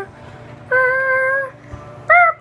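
A child's voice singing one held note, just under a second long, over the steady low hum of a running microwave oven.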